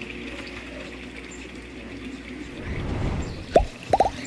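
Water running steadily from small pipe outlets into open fish tanks, with a few sharp plops near the end.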